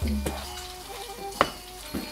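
Raw chicken and red curry paste sizzling in a nonstick frying pan over high heat, stirred and scraped with a wooden spatula. There is one sharp knock of the spatula on the pan about one and a half seconds in.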